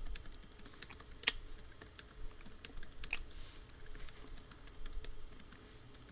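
Typing on a computer keyboard: irregular, fairly quiet key clicks, with a couple of louder clicks about a second in and about three seconds in.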